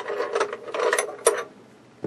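Small metallic clicks and scraping as a brass-plated arm fitting on a television's plastic cabinet is worked loose by hand, stopping about a second and a half in.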